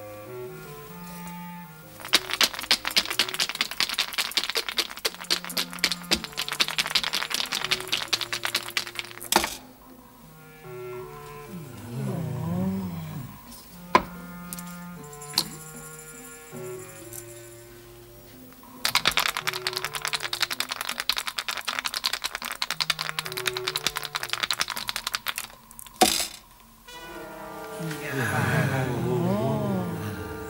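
Dice shaken hard in a cup, a long fast rattle ended by a sharp clack as they are thrown onto the table. The same shake and throw comes a second time, as the other player takes her turn. Melodic background music plays under both throws.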